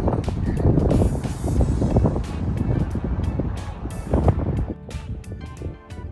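Wind buffeting the microphone as a heavy low rumble, then background music with sustained notes becoming clear about five seconds in.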